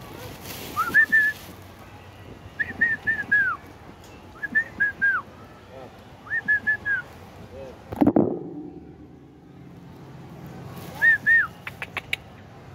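Asian pied starling (jalak suren) singing five short whistled phrases of three or four clear notes that rise and fall, spaced a second or more apart with a longer gap near the end. A dull thump sounds about eight seconds in, and a few sharp clicks come near the end.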